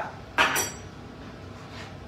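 A metal spoon clinks once with a short high ring about half a second in.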